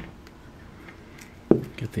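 Steel pliers pressing on a small brass model part, with quiet handling and one sharp click about one and a half seconds in.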